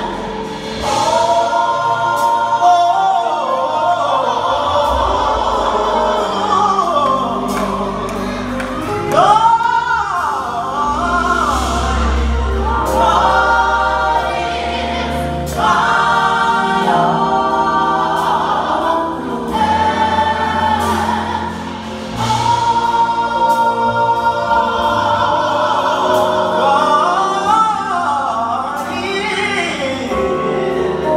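Gospel choir singing live through microphones and church speakers, in held chords with low bass notes underneath.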